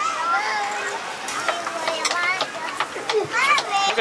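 Young children's voices: a toddler singing, with other children talking and calling out around him.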